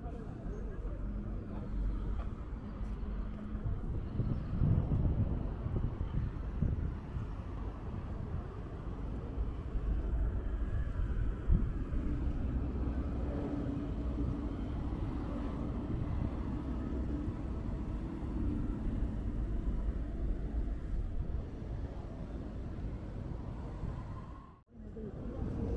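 Street traffic at a city intersection: vehicle engines running and passing in a steady low rumble, with indistinct voices of passers-by. A single sharp knock stands out near the middle.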